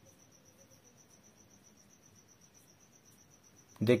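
A faint, high-pitched trill, evenly pulsed many times a second and steady throughout, over quiet room tone. A man's voice starts just before the end.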